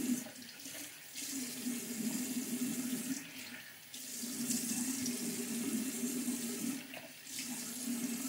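Warm water running from a bathroom tap into the sink while hands splash it onto the face to rinse off soap, the flow dipping briefly a few times, with a low steady tone under the water noise.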